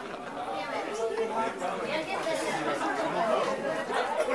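Crowd chatter: many people talking at once at a steady moderate level, with no single voice standing out.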